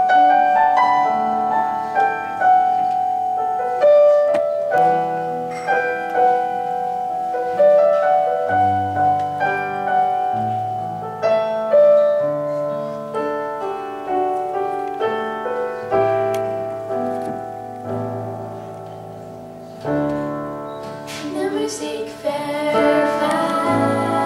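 A piano plays a slow intro of single notes and chords, each note dying away. About 21 seconds in, female voices begin singing over it.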